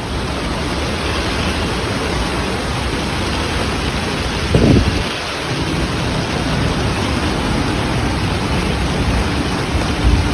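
Loud, steady rush of heavy rain and floodwater pouring through a street. A brief low rumble comes a little under halfway through.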